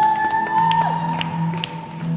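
Gospel worship music: a long high held vocal note over a sustained electric guitar chord, with scattered hand claps.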